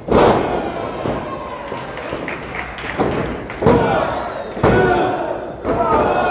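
Bodies hitting the wrestling ring canvas: one loud thud as a wrestler goes down, then a run of further thuds about a second apart from about three seconds in, over shouting voices in the crowd.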